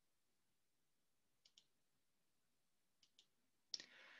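Near silence with faint paired clicks, one pair about a second and a half in and another about three seconds in, and a short soft noise just before the end.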